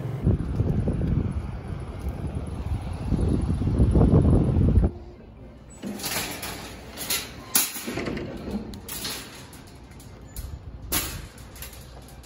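A low rumbling noise for the first few seconds that cuts off suddenly, then a metal wire shopping cart rattling and clattering in several short bursts as it is pulled from a row of nested carts and pushed along.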